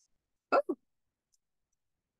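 Two quick, short vocal sounds from a woman just after half a second in, the second lower than the first. The rest is near silence.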